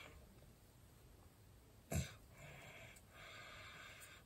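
Quiet breathing, with a single short knock about two seconds in.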